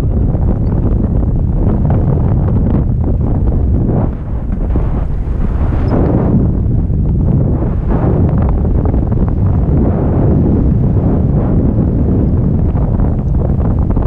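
Loud, steady wind rumbling on the camera microphone from the airflow of a tandem paraglider in flight, dipping briefly about four seconds in.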